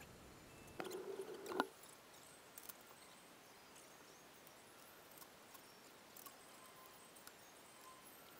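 A short rustle ending in a knock about a second in as a person climbs off a motorcycle, then faint scattered clicks and ticks of hands working around the bike.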